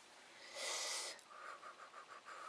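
A person's short, sharp breath of air, heard as a hiss about half a second in, followed by a quick run of about half a dozen faint ticks.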